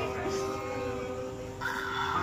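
Background piano music: held notes slowly fading, then new notes come in, louder, about one and a half seconds in.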